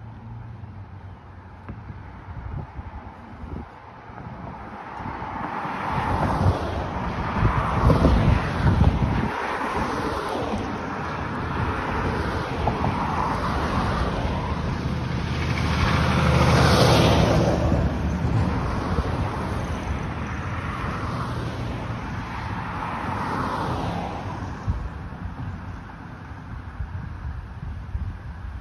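Road traffic passing on a multi-lane street beside the sidewalk: tyre and engine noise swelling and fading as vehicles go by, loudest about eight seconds in and again around seventeen seconds.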